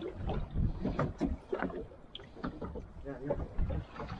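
Wind and choppy sea water around a small boat at sea: an uneven rush with irregular gusts and slaps.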